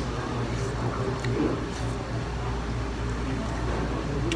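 Faint, scattered wet clicks of someone chewing a chicken wing, over a steady low hum of room ambience.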